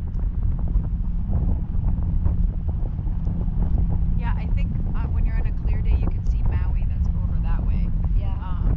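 Steady low rumble of wind buffeting the microphone of a camera hung under a parasail. Faint talking comes in about halfway through.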